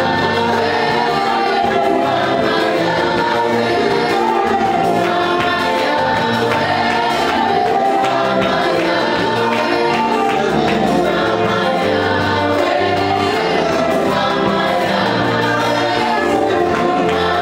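Live gospel worship song: a woman leads at the microphone with backing singers, accompanied by a band with electric guitar. It plays steadily and loudly, with the bass moving in held steps.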